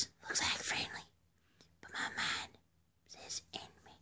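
A person whispering in three short bursts separated by pauses.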